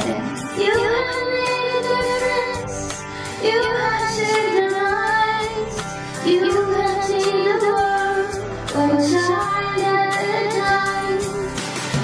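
A young girl singing a melodic song over a recorded backing track with a steady beat.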